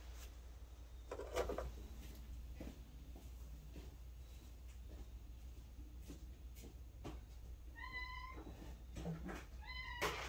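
Domestic cat meowing twice near the end, short high calls about two seconds apart. A single thump about a second in is the loudest sound.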